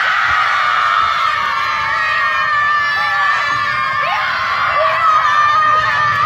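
A group of young boys shouting and cheering together at the top of their voices, a sustained high-pitched yell from many voices at once.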